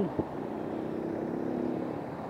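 A motor vehicle passing on the road, its engine a steady hum that builds toward the middle and eases off near the end.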